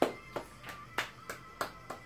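One person clapping their hands in an even rhythm, about three claps a second, about seven in all, with the first and the one a second in the loudest.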